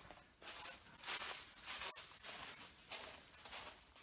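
Faint footsteps crunching and rustling on dry plant litter, nearly two steps a second.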